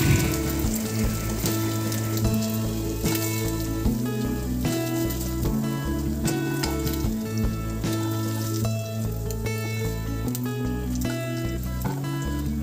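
Chicken pieces sizzling as they fry in hot oil in a nonstick wok, with background music of held notes over a changing bass line playing throughout.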